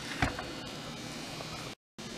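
Quiet room tone with a steady faint hiss and a single small click about a quarter second in; the sound cuts out abruptly near the end.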